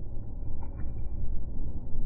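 A low, uneven rumble that rises and falls irregularly, with a faint brief high tone near the middle.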